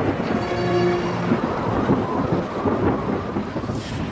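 Thunder rumbling with rain: a storm sound in a documentary soundtrack.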